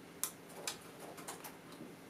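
Quiet eating sounds from someone chewing a mouthful of food: a few faint, irregular clicks, the sharpest just after the start.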